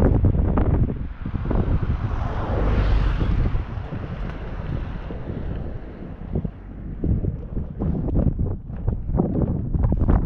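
Wind buffeting the microphone: a gusting low rumble with a rushing hiss that swells about three seconds in and eases off for a moment past the middle.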